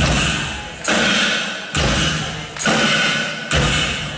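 A slow, steady percussion beat of heavy thuds, one just under every second, each ringing out in the hall before the next, as the song's opening pulse.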